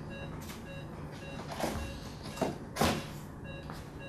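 A patient monitor on an anaesthetic machine beeping, a steady run of short electronic beeps. Over it come a few rustles and knocks of things being handled, the loudest just before three seconds in.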